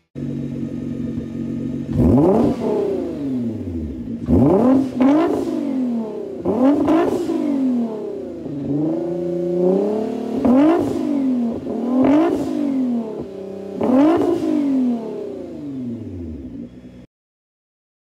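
Nissan GT-R's twin-turbo V6 idling, then revved in about eight sharp blips through its quad-tip exhaust, with one longer held rev around the middle. The sound cuts off abruptly near the end.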